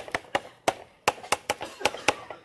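Chalk writing on a blackboard: a quick, irregular run of about a dozen sharp taps as the characters are stroked out.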